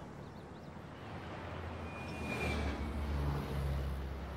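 Road traffic noise swelling as a vehicle passes, with a low engine hum growing louder in the second half. A brief thin high tone sounds about two and a half seconds in.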